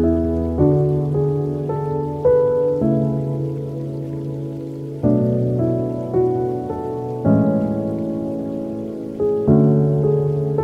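Slow, soft ambient instrumental music: notes and low chords struck about every one to two seconds, each left to ring and fade.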